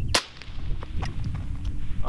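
A single suppressed rifle shot: a .224 Valkyrie JP SCR-11 fired through an AMTAC Mantis-E .30-calibre suppressor, one sharp crack just after the start. It measures 136.7 dB peak off to the side, where this more open-baffled can runs a few decibels louder.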